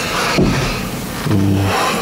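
Rustling noise as a man shifts in his seat close to the microphone, with a short hesitant 'uh' from him a little past the middle.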